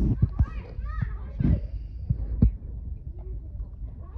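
Children's voices on a playground, with a few short high calls in the first second or so. Wind rumbles on the microphone at the start and fades quickly, and a few soft knocks sound through the first half.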